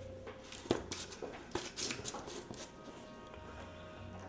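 Light clicks and knocks of a plastic protein-powder tub and its lid being handled, over faint background music.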